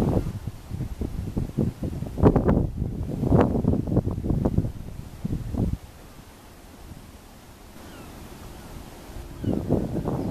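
Wind buffeting the microphone in gusts. It drops away suddenly about six seconds in, leaving a quieter steady background, and the gusts pick up again near the end.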